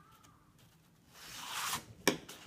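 A sheet of thick patterned scrapbook paper sliding and rustling as it is handled: one soft swish, rising and falling, in the second half after a near-quiet moment.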